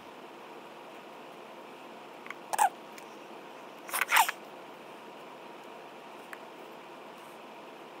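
A few short plastic clicks from a cuticle oil pen being handled and opened, two about two and a half seconds in and two more about four seconds in, over faint steady hiss.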